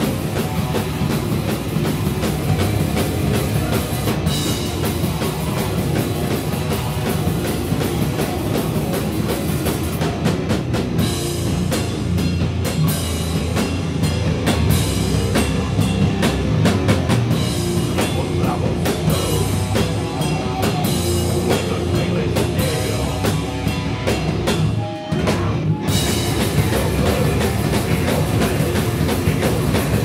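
Powerviolence band playing loud and live, with a pounding drum kit under heavily amplified instruments. The playing drops briefly about 25 seconds in, then the full band crashes back in.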